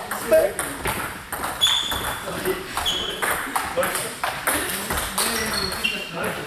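Table tennis balls being struck by bats and bouncing on tables at several tables at once: a steady scatter of irregular sharp clicks, some with a brief high ping.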